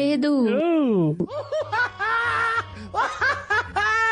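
A person's voice making wordless sounds: a drawn-out, wavering cry, then a run of short, choppy syllables like snickering laughter, with a low hum underneath from about a second in.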